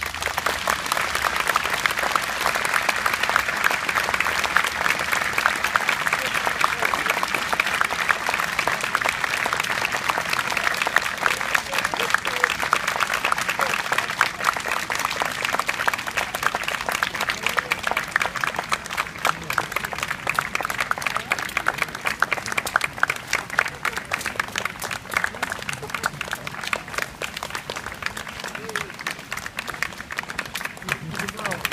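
Large audience applauding at the end of a solo piano piece: dense clapping, strongest in the first half and thinning to more scattered claps in the second half.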